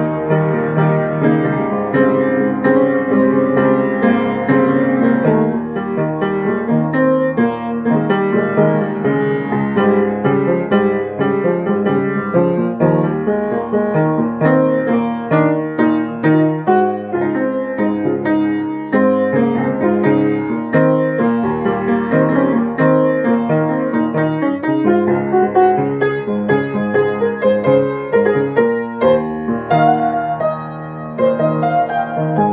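Grand piano played solo, an improvisation with a continuous flow of chords and melody notes.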